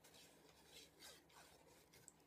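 Near silence, with a few faint rubbing sounds as a folded cardstock pot is turned over in the hands.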